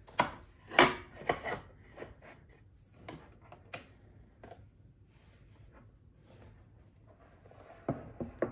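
A wooden canvas board being fitted into a wooden U.Go portable easel box. A few sharp knocks and clicks come in the first second and a half, then lighter taps and rubbing, and another knock near the end.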